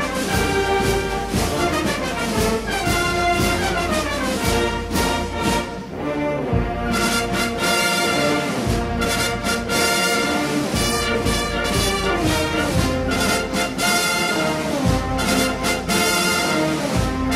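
Orchestral music with prominent brass, playing continuously.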